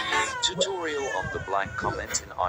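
A high voice in short calls that slide up and down in pitch, sounding like meowing.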